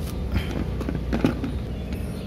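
A knife cutting up pieces of a wild mushroom by hand over an aluminium basin: a few light clicks and snaps spaced about half a second apart, over a steady low hum.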